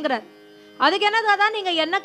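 A woman singing a Carnatic melodic phrase with long, wavering held notes over a steady drone. The voice breaks off briefly just after the start, leaving only the drone, then comes back just under a second in.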